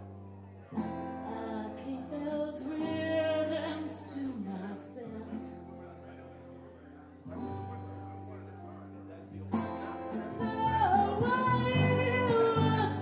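Live band music: strummed acoustic guitar, electric guitar and bass under a woman's singing, with long held bass notes; it swells louder and fuller from about ten seconds in.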